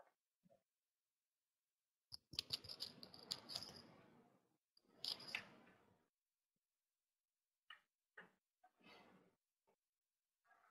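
Faint clicks and rustling in a few short bursts, strongest in the first half, then several brief ticks near the end.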